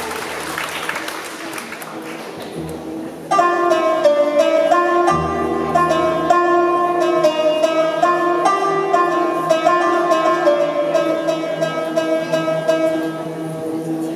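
Hall noise fading, then about three seconds in a plucked string instrument of a live Arabic ensemble suddenly begins a melodic solo introduction, its notes ringing over a sustained low note.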